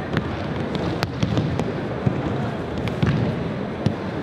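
Aikido breakfalls on tatami mats: irregular sharp slaps and thuds as practitioners from several pairs are thrown and land, a few per second, over a steady low background rumble of the hall.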